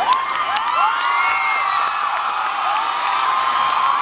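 Audience cheering and screaming, many high-pitched voices shrieking at once. It swells suddenly at the start and stays loud throughout.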